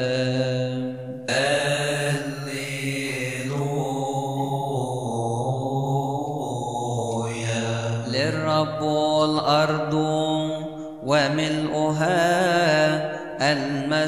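A voice chanting a long wordless melody in wavering, held notes over a steady low drone, with a short break about eleven seconds in.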